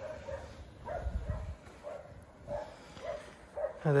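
A dog barking faintly, several short barks spread over a few seconds, with a brief low rumble about a second in.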